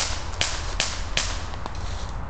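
Airsoft gun firing single shots: four sharp cracks about 0.4 s apart, then a fainter one.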